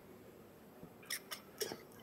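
Three quick keyboard keystroke clicks over faint room tone, about a quarter second apart, starting about a second in.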